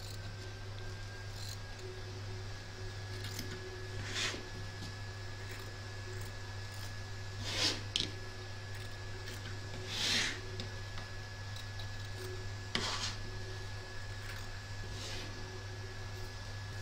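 Small pinch-action precision scissors snipping through quilt batting: about six separate snips a couple of seconds apart, over a steady low hum.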